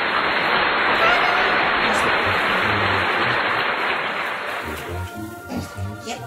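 Loud rustling of the tree's fir branches as they are handled and pulled open. It fades out about five seconds in, over background Christmas music.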